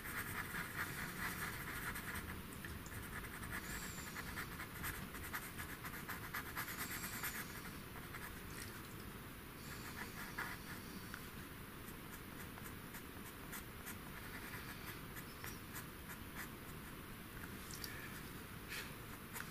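Black pastel pencil scratching over pastel paper in quick, short strokes, faint. The strokes are busier for the first seven seconds or so, then lighter.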